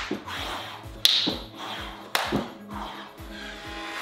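Background music with a steady beat, with two sharp hand claps about a second apart, one about a second in and one about two seconds in, from clapping push-ups done on the knees.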